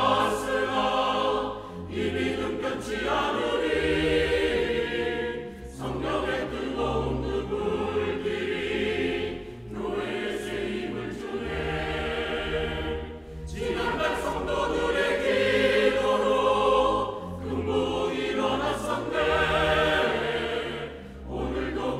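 Mixed church choir singing a Korean hymn in phrases of about four seconds, with brief dips for breath between them.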